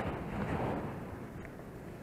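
Wind rumbling on the microphone over the wash of surf against jetty rocks, swelling briefly about half a second in.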